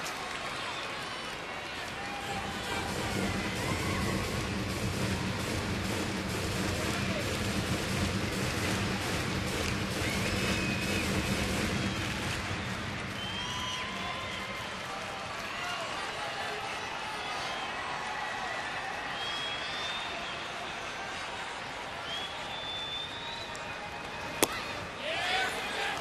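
Baseball stadium crowd noise between pitches, a steady murmur of many voices with occasional shouts. Near the end one sharp pop as a pitch smacks into the catcher's mitt.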